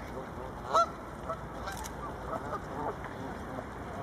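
A flock of Canada geese honking, with one loud honk just under a second in and softer short calls scattered through the rest.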